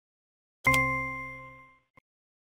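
A single electronic ding sound effect from interactive e-book software as an answer is selected. It starts suddenly and rings out, fading over about a second.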